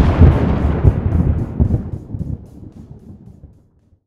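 Thunder sound effect: a deep rolling rumble with a few surges early on, dying away over about three and a half seconds.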